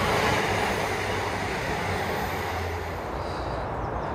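Northern passenger train passing close by on the track behind a fence, a steady rushing rumble that slowly fades as it moves away.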